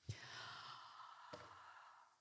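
Near silence in a pause between sentences, with a faint breath into the microphone during the first second and a small click.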